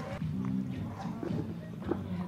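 Faint voices of players and crowd at the ground with quiet background music, and a brief click near the end.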